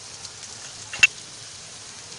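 Grated ginger and whole black peppercorns sizzling steadily in a little hot oil in a nonstick frying pan. About a second in, one sharp knock stands out, the wooden spatula striking the pan.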